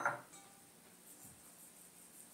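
Near silence: faint room tone after a word trails off at the very start.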